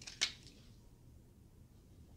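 A single short, sharp click about a fifth of a second in, then faint room tone.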